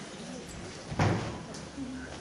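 Faint murmur in a hall, with a single short, low thump about a second in.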